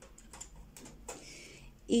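Faint handling noise of a small ice-cream-cone-shaped pot for thread scraps being held and moved aside: a few light clicks, then a short rustle.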